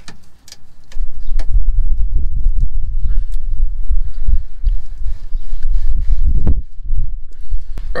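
A loud, gusty low rumble buffeting the microphone from about a second in until near the end, with a few sharp clicks of pliers working a spring hose clip on a coolant pipe.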